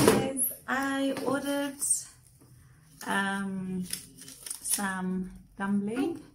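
A woman's voice humming or vocalising a few held, wordless notes, with thin plastic carrier bags rustling as they are handled. A sharp rustle or knock at the very start is the loudest sound.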